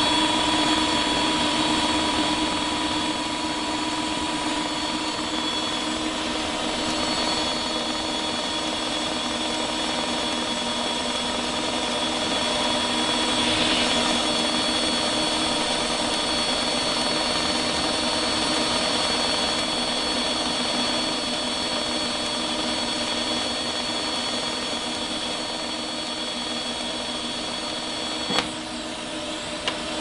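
DC TIG welding arc from a Lincoln Power MIG 360MP with the pulser set to ten pulses per second, giving a steady buzzing hiss that holds until the arc is broken about two seconds before the end, with a click.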